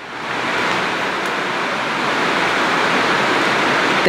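A steady, fairly loud hiss of noise with no pitch, swelling in over the first half second and then holding level until it stops abruptly near the end.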